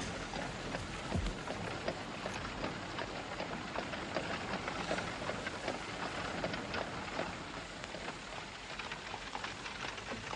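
A steady crackling noise like rain, made of many small irregular ticks.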